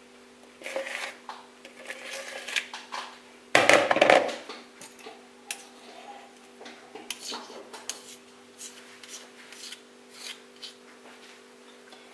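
Metal spoon scraping and tapping against a plastic mixing bowl and a silicone baking pan while thick batter is scooped out and spread, with a louder clatter about four seconds in. A steady low hum runs underneath.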